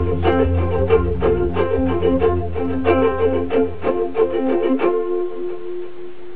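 Ukulele strummed in a quick, even rhythm over a steady low bass note and higher held notes. The bass drops out about five seconds in, leaving the held notes ringing.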